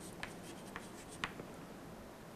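Chalk writing on a chalkboard: a few faint, short taps and scratches of the chalk, roughly half a second apart.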